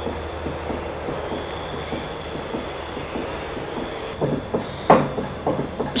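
Steady low hum and hiss with a thin, steady high-pitched whine. A few short, soft sounds come near the end.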